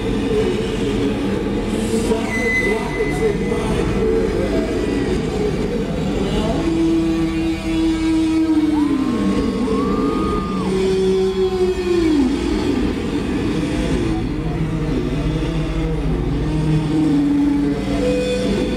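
Rock band playing live, heard on an audience stereo-mic cassette recording: loud distorted electric guitars with long held notes that slide up and down in pitch, over a dense steady wash of noise.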